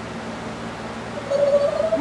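Steady background hum and hiss. About a second and a half in, a woman's voice starts with one long held sound that leads into speech.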